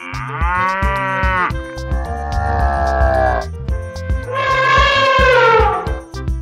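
Three long mooing calls of a bovine, each sliding slightly down in pitch, over children's background music with a steady beat.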